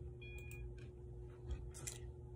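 Quiet room tone with a steady faint hum and a few faint clicks.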